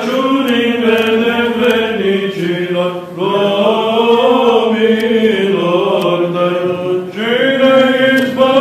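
Orthodox liturgical chant sung by a group of male voices in long, sustained phrases, with short breaths about three seconds in and again about seven seconds in.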